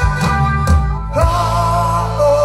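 Live band music with bass, drums and guitar, loud and steady. Drum hits fall in the first part; just after a second in, a held melody line with vibrato comes in over the bass.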